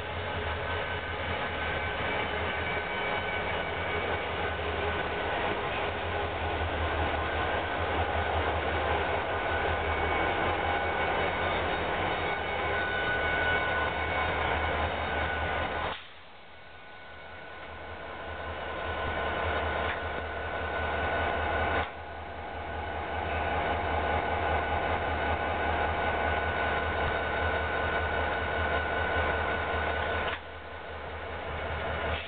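Union Pacific SD40N diesel-electric locomotives, EMD two-stroke diesels, passing close by at speed: a loud, steady engine rumble with steady engine tones over the rush of the train. About halfway through the sound drops suddenly and builds back over a few seconds, and a few seconds later it drops sharply once more.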